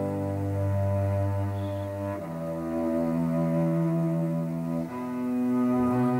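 Slow instrumental music: bowed strings holding long, sustained notes, moving to new notes about two seconds in and again near five seconds.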